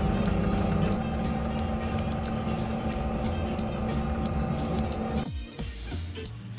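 Bench pillar drill running with a steady hum as a 3.5 mm bit drills through a small plastic end cap, then switched off and stopping about five seconds in. Background music plays throughout.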